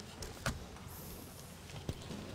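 Faint rustling and two light knocks of people moving in a church sanctuary as they rise: one knock about half a second in and one near the end, with a soft hiss of rustling between them.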